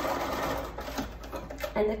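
Electric sewing machine stitching a short seam through small quilt pieces, running for about a second and then stopping, with a few light clicks afterwards.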